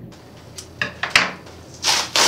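Cardboard shipping box being opened by hand: a few short scrapes and a sharp click, then a louder, longer rasp of cardboard and tape near the end.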